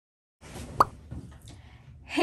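A moment of dead silence, then faint room tone with a single short pop a little under a second in.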